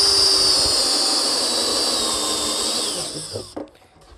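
Cordless drill with a step bit boring a hole through the plastic top of a 55-gallon barrel. It runs steadily with a high whine for about three and a half seconds, the pitch sagging slightly near the end before it stops.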